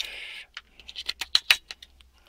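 AA cells being pushed into a black plastic battery holder: a short scrape, then a run of sharp clicks and taps as the cells and plastic knock against each other and the spring contacts.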